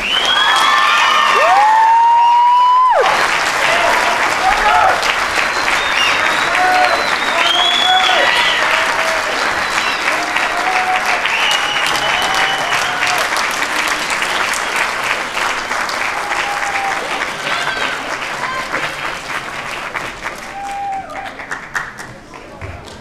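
A jazz band's final note, rising and held, cuts off about three seconds in, and the audience breaks into loud applause with cheers and whoops that slowly fade.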